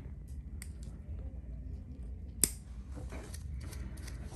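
Steel nail nippers clipping through an overgrown toenail: one sharp snap about two and a half seconds in, with a few fainter clicks before and after it.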